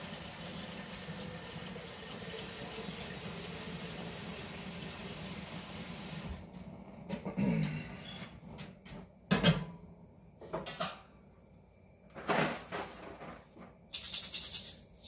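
Water running from a tap into a stainless steel cooking pot, stopping about six seconds in. It is followed by a few knocks and clatters as the pot is handled.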